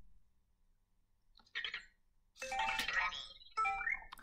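Anki Vector robot's electronic chimes and beeps: a short blip about a second and a half in, then a longer run of tones near the end. This is its cue on hearing "question", showing it is ready to take the question.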